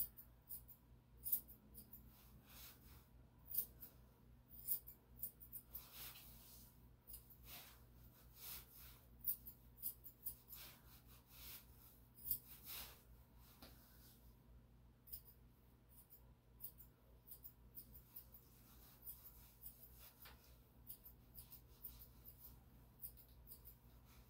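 Grooming scissors snipping through a puppy's long coat, blending a three-quarter inch cut on the legs: faint, quick, irregular snips with short pauses between runs.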